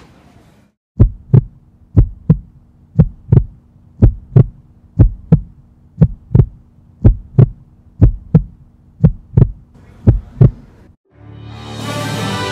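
Heartbeat sound effect edited into the soundtrack: about ten loud lub-dub double thumps, one pair a second, over a low steady hum. It stops near the end, just as music comes in.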